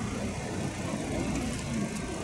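Steady low outdoor background rumble with faint, indistinct voices; no distinct event stands out.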